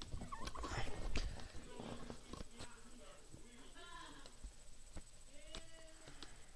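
A few short, faint wordless vocal sounds from a person, with scattered sharp clicks in between.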